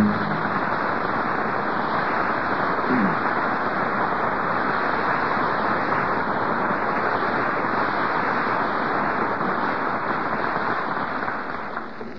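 Studio audience applauding steadily at the close of a live radio play, dying away near the end.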